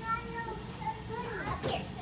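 Children's voices at play: short, high-pitched calls and chatter from young children, with no clear words.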